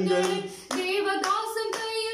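Two people clapping their hands steadily in time, about four claps a second, over sung worship; both the clapping and the singing drop briefly about half a second in, then carry on.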